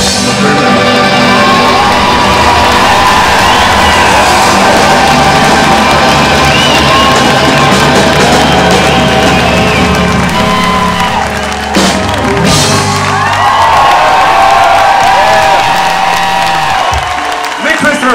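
A live rock band holds out a long closing chord while the audience cheers. The band stops about twelve seconds in, leaving the crowd cheering and whooping.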